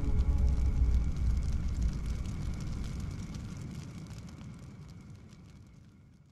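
Low rumble with faint crackling, a film trailer's closing sound effect, fading out steadily to near silence.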